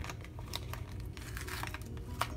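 Paper sticker sheet crinkling and rustling as it is handled and a large sticker is peeled off, a run of small irregular crackles and clicks.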